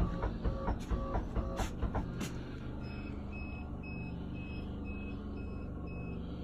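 Electronic warning beeper sounding short, high beeps about twice a second over a low steady hum, after a faster pulsing tone with clicks in the first two seconds. It goes off as the air conditioner's start has popped the breaker.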